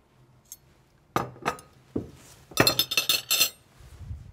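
China plates and glassware clinking as pieces of a place setting are handled and set down: a sharp clink a little over a second in, another near two seconds, then a quick run of ringing clinks around three seconds in.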